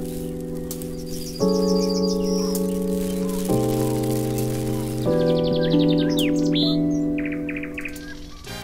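Short station ident music: sustained chords that change about every two seconds, with rapid high bird chirps and trills layered over them from about a second and a half in.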